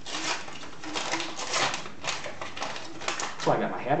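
Wrapping of a trading-card pack crinkling and tearing as it is opened by hand, a dense run of crackles.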